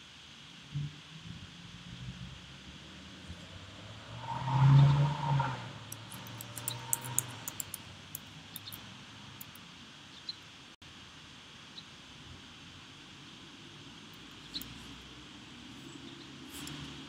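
Computer keyboard keys clicking in a quick run as a word of code is typed, with a few single clicks later. Just before the typing there is a short, louder low sound lasting about a second.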